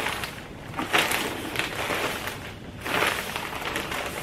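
Gloved hands scooping composted cow manure out of a plastic bag into a plastic tub. The compost and bag rustle and crunch in surges at the start, about a second in, and about three seconds in.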